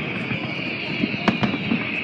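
Aerial fireworks shells bursting in a display: several sharp bangs, the loudest a little over a second in, over a continuous high hiss.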